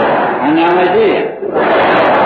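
Low-fidelity 1961 tape recording of a Burmese monk's sermon, with steady hiss throughout. A man's voice speaks in the first half, then from about halfway many voices answer together.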